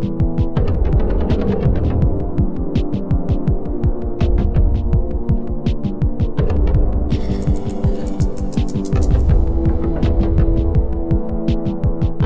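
Loud, steady low electronic hum with a rapid pulsing throb running through it, laid over as a soundtrack drone. A burst of hiss comes in about seven seconds in and fades out about two seconds later.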